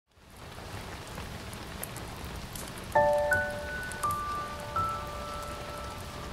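Rain ambience fading in as a steady patter. About three seconds in, a slow music intro begins on top: a struck chord, then a few single bell-like notes, each left ringing.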